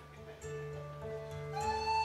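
Live folk music: classical acoustic guitar with frame drum. About one and a half seconds in, an end-blown flute comes in on a high, wavering melody line and becomes the loudest part.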